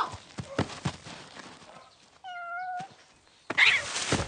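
A couple of sharp slap-like hits in the first second, then a single cat meow, fairly level in pitch and about half a second long, a little over two seconds in. A short harsh noise follows near the end.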